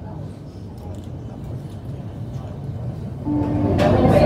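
Suburban electric train running along the track, heard from inside the carriage: a steady low rumble. Near the end a short steady tone starts and there is a sharp click.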